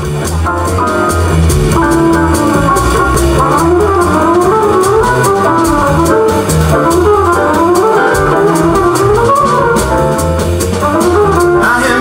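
Live jazz combo playing an instrumental introduction: upright bass and drum kit with busy cymbals under a moving melody from keyboard and trumpet.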